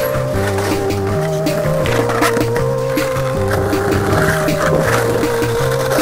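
Music with a repeating bass line, under which a skateboard rolls on asphalt; the wheel noise is clearest in the last couple of seconds.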